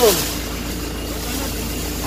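A steady low background rumble with a faint constant hum, like a running engine. A voice trails off at the very start.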